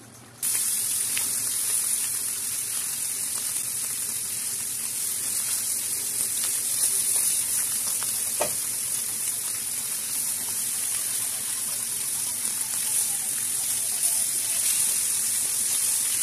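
Crab curry sizzling in a frying pan as it is stirred with a spatula: a loud, steady hiss that starts suddenly about half a second in, with a faint knock about eight seconds in.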